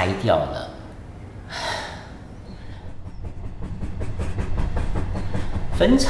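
A train running on rails, a low rumble with fast wheel clatter that grows steadily louder over the second half.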